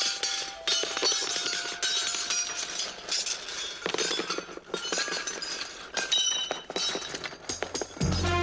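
Gold coins falling and clinking against one another and onto a table, a dense, continuous metallic jingle with ringing high notes.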